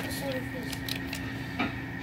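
Faint background voices over a steady hum, with a few light clicks from a plastic toy RC truck being handled.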